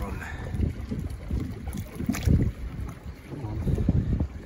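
Wind buffeting the microphone in irregular low rumbles, over water sloshing where a large fish is held in the water at the side of a boat for release; one brief sharper splash-like sound a little past halfway.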